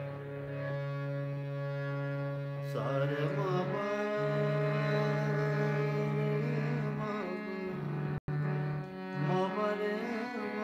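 Ghazal singing with harmonium: a steady harmonium chord and drone sustains, and about three seconds in a male voice enters with long held notes that glide and waver. The sound drops out for an instant near the end.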